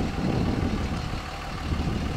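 5.9L Cummins inline-six diesel of a 2006 Dodge Ram 2500 idling with a steady low rumble.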